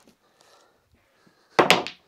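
A snooker shot on a small table: one sudden hard knock of the cue ball being struck and clacking into other balls, about one and a half seconds in.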